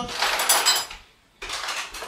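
Metal cutlery clattering in a kitchen drawer as it is rummaged through: about a second of jangling, a brief pause, then a few more clinks near the end.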